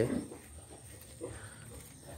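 Quiet pig pen with one faint, short grunt from a young pig about a second in.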